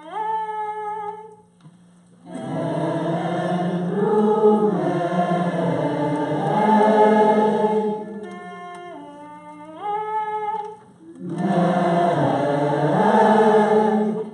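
Call-and-response singing of a wordless nigun: one voice sings a short phrase alone, then a roomful of people sings it back together, louder. This happens twice, with the solo line returning about nine seconds in.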